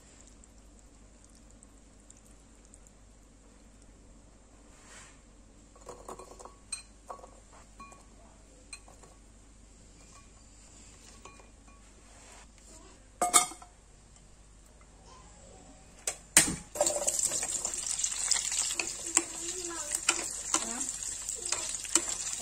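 Quiet at first, with a few light clinks and one sharp click partway through. Then a couple of knocks as green chillies, shallots, garlic and green tomatoes go into hot oil in a wok, and steady loud sizzling of frying lasts to the end.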